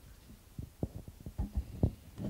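Handling noise from a roving microphone as it is passed to an audience questioner: a string of irregular, dull low thumps and bumps.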